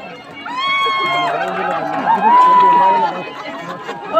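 Festival crowd noise with two long, high-pitched held calls, the second and louder one about two seconds in.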